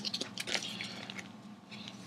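A sheet of printed paper being folded and creased by hand: faint rustling with a few soft crinkles, dying down after the first second.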